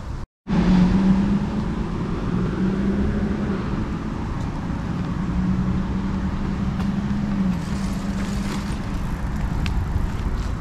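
Motor vehicle engine running close by on the street, a steady hum that drops away about seven and a half seconds in, over a low rumble of wind on the microphone.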